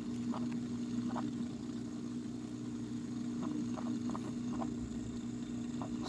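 Steady low hum of the small water pump that feeds the vivarium's waterfall, with a few faint ticks over it.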